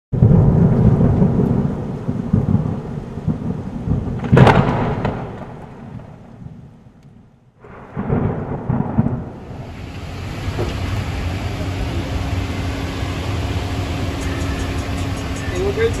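Thunder sound effect: a loud rumble with a sharp crack of thunder about four seconds in, dying away to almost nothing by halfway. A new sound then starts, settling into a steady hiss with a low hum for the second half.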